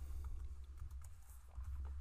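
Computer keyboard being typed on, a few faint scattered keystrokes, over a steady low hum.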